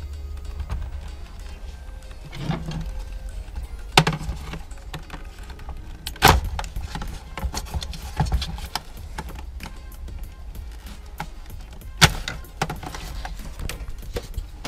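Background music, with three sharp plastic clicks and smaller ticks and rattles as wiring-harness connectors are worked loose and unclipped from the back of a Honda Civic gauge cluster.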